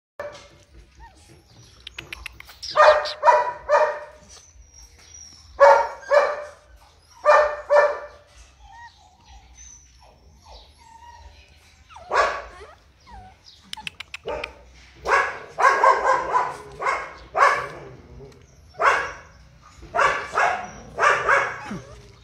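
Rottweiler puppies barking in short runs of two or three barks, with a denser stretch of barking in the second half. A few quick faint clicks fall in between.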